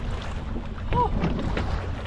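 Boat motor running steadily at trolling speed, a low drone, with wind on the microphone. A few light knocks of handling on board sit over it.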